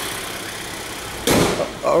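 Car bonnet swung down and shut with one sudden heavy thump about a second and a half in. Underneath, the engine idles with a low steady hum.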